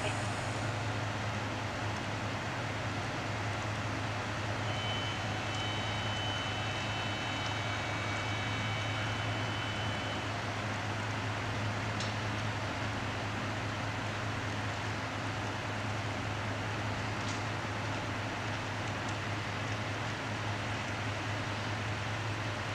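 Steady low hum of an idling vehicle engine under a constant outdoor noise. A faint high steady tone comes in for a few seconds about five seconds in.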